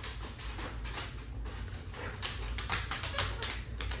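A dog's claws clicking and tapping on a hardwood floor as it runs to fetch a toy, in quick, irregular clicks.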